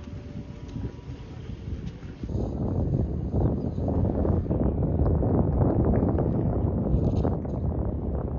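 Wind buffeting the microphone: a loud, uneven low rumble that starts about two seconds in, after a quieter outdoor background.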